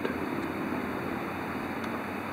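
Steady background rumble and hiss, even throughout, with no distinct sound standing out.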